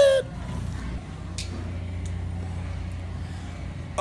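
Steady low rumble and hum of a large supermarket's background noise, with one faint click about a second and a half in. The last sung note of a short chant ends right at the start.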